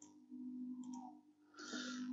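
Faint clicking of a computer mouse working the software, over a low steady hum.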